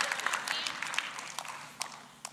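Congregation applauding, scattered claps thinning out and dying away near the end.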